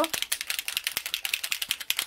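Small bottle of pearl alcohol ink shaken by hand, its mixing ball rattling inside in a quick, even run of clicks.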